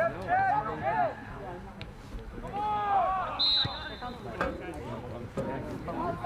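Players shouting calls across a soccer field, in loud, drawn-out cries, with a short high whistle blast about three and a half seconds in.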